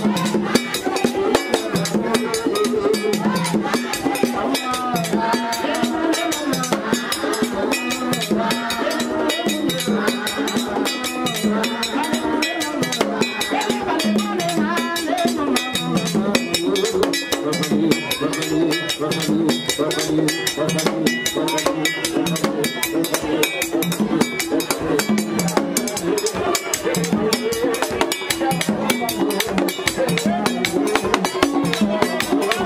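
A man singing a vodou song through a microphone over continuous fast drumming on Haitian vodou drums.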